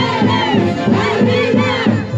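A crowd shouting and whooping over loud live Andean festival band music with a steady beat.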